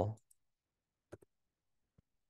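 Two quick, faint computer clicks just after a second in, with a fainter one near the end, while the text is being edited. The end of a spoken word trails off at the very start.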